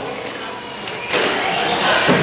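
Electric motors and drivetrains of Traxxas Slash RC trucks whining as they race, louder from about a second in, with the pitch rising as a truck accelerates.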